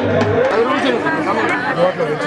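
Music with a drum stops about half a second in. Several people then talk over one another in overlapping chatter.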